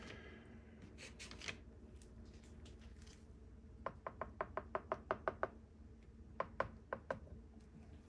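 A quick run of about nine light taps, roughly six a second, starting about four seconds in, then four more spaced-out taps a second later.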